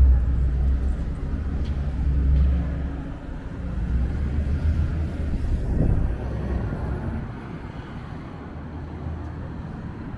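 Road traffic alongside a city pavement: a heavy, steady low engine rumble from vehicles on the road, which dies away about seven seconds in to a quieter street hum.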